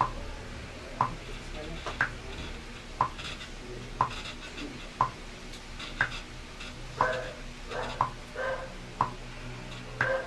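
A clock ticking steadily once a second, with a few softer sounds between the ticks late on.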